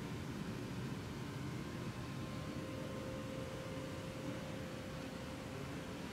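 Steady indoor room noise: an even low rumble and hiss with a faint, constant hum, unchanging throughout.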